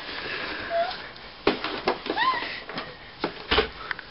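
A baby gives a short squeal that rises and falls about halfway through, with a smaller squeak before it. Around it come several knocks and taps as she handles a toy inside a cardboard box, the loudest thump near the end.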